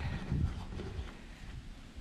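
Low, muffled rumbling and bumps of handling noise on a handheld camera's microphone as the camera is turned around, strongest in the first second and fading after.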